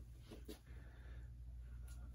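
Near silence: room tone with a steady low hum and a faint tick about half a second in.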